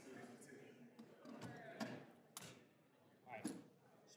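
Faint, indistinct voices of people talking at a distance, picked up by an open room microphone, with a few light knocks.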